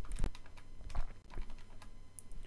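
Keys being pressed in an irregular run of light clicks, about eight in two seconds, as figures are keyed in for a calculation.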